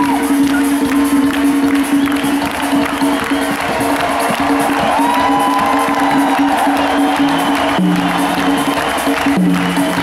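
Live concert music: a held keyboard chord sounds steadily over a cheering crowd, with a lower note coming in twice near the end.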